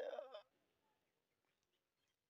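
An elderly woman's tearful, wavering voice trails off within the first half second, then near silence.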